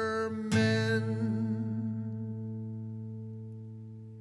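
Acoustic guitar's closing chord: a single strum about half a second in, left to ring out and fade slowly as the song ends.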